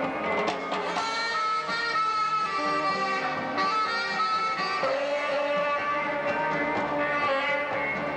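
Live band music: held saxophone notes over electric guitar, bass guitar and drums.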